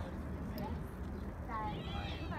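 Distant shouts of young lacrosse players and coaches across an outdoor field, over a steady low rumble.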